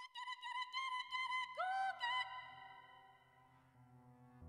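Live electronic pop music starting out of silence: a high lead line of short bending notes, then a lower note that slides up and is held for about half a second. A low synth drone comes in underneath, followed by a fast low pulse, and things quieten once the lead drops out.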